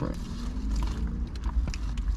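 Foil sandwich wrapping crinkling with scattered small clicks as the sandwiches are handled and eaten, over a low steady rumble in the car cabin. A short hummed 'mm' comes in the first second.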